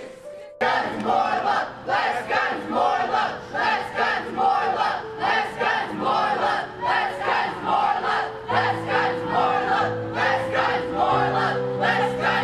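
A crowd of young protesters chanting a rhythmic slogan, about two shouts a second, starting suddenly just after a brief dip. Music with held low chords runs underneath and grows fuller about two-thirds of the way in.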